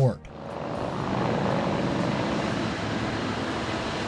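Heavy engine running: a steady rumbling roar with a faint hum in it, swelling in over the first second.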